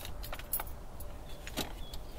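A handful of sharp, light clicks and rattles, scattered irregularly, over a steady low rumble, with a couple of short high chirps near the end.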